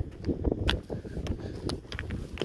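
Footsteps on a gravelly stone path, climbing rough steps, a sharp step every half second or so, with wind rumbling on the microphone.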